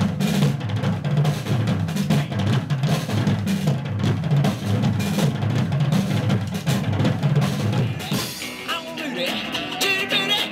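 Drum kit solo: rapid beats on the bass drum and toms with snare rolls. About eight seconds in it gives way to the band's music with electric guitar.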